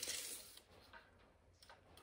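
Faint ticks and light scratching from hand work on a two-by-four: a tape measure held along the board and the board being marked for cutting.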